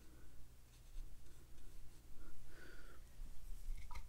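A watercolor brush working paint into cold-press cotton paper, making a faint, soft scratching, with a low steady hum underneath.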